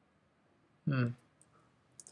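A man's short, thoughtful "hmm" about a second in, followed by a few faint, brief clicks near the end, in an otherwise quiet room.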